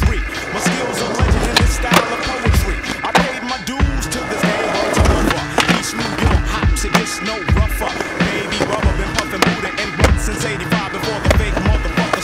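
Hip-hop music with a bass-heavy beat, mixed with skateboard sounds: wheels rolling on concrete and the sharp clacks of the board popping and landing tricks.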